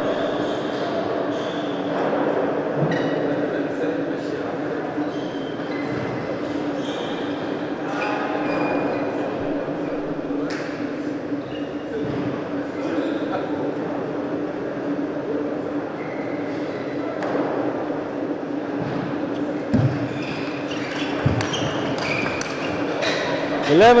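Table tennis hall between points: a steady hum with scattered short high squeaks and faint voices. Near the end comes a short doubles rally, the celluloid-type plastic ball clicking off bats and table a handful of times.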